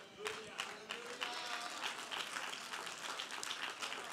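A congregation clapping, with scattered voices calling out in response.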